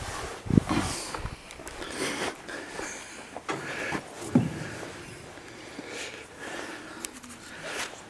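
A brown bear in its cage making two short low sounds, about half a second in and again just past four seconds, among rustling and shuffling in straw.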